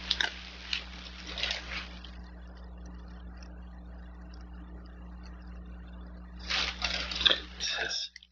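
Plastic shopping bag crinkling and rustling as it is handled, in a stretch at the start and again near the end, over a steady low hum.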